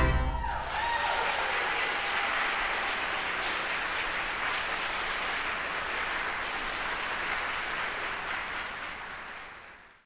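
The closing pipe-organ chord is released and rings briefly in the sanctuary's reverberation, then a congregation applauds steadily, fading out near the end.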